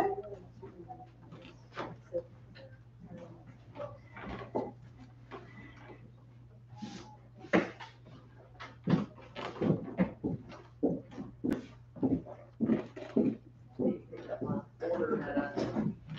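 Quiet room with faint, indistinct voices and scattered short handling noises over a steady low hum.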